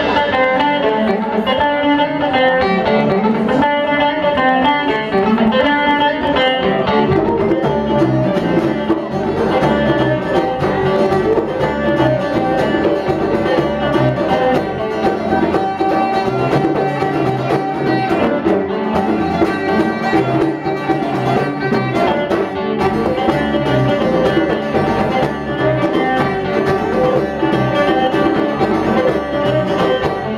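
Small band playing live: plucked guitar and bass guitar with a violin, the violin's line wavering and gliding above the plucked strings.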